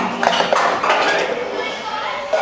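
Indistinct voices talking and chattering, with no clear words.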